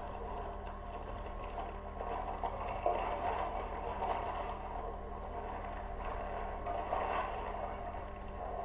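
Kitchen room noise: a steady low hum under faint clatter of bottles and utensils being handled at a stove, with one sharper knock about three seconds in.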